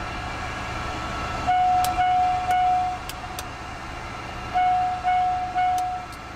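Embraer Phenom 300 cockpit aural warning system sounding during the test-panel check: a steady mid-pitched tone beeps three times about a second and a half in, and three times again near the end, over a steady cockpit hum.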